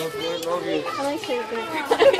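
Young children's high-pitched voices making short vocal sounds without clear words.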